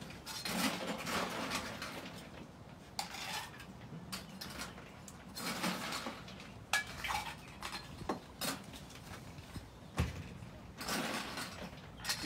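Metal mixing tins, bar tools and glassware being handled on a bar top: scattered clinks and knocks, one short ringing clink, with a few brief stretches of hiss.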